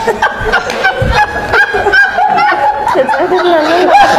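People laughing loudly and at length, with high, squeaky, honking laughter.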